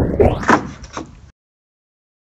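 Skateboard clattering onto wooden decking: a sharp hit, then a quick run of knocks and a short scrape as the board comes down onto its edge under the rider's feet, with another knock about a second in. The sound cuts off suddenly just over a second in.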